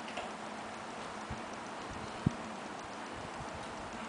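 Steady quiet room noise with faint regular ticking, and one sharp click a little over two seconds in.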